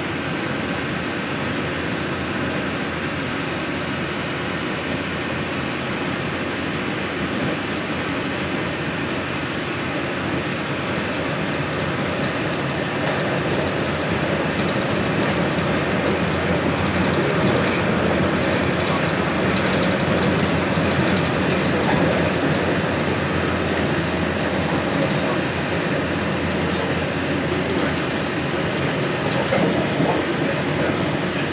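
Walt Disney World monorail running along its beam, heard from inside the car: a steady rumble of its rubber tyres on the concrete beam, growing a little louder about halfway through.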